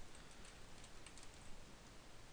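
Faint computer keyboard typing: a few scattered keystrokes over a low steady hiss.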